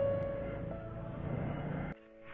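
Steady low rush of air blown through a plastic pipe into a wood fire to fan the flames, under soft background music with long held notes; it stops abruptly at the end.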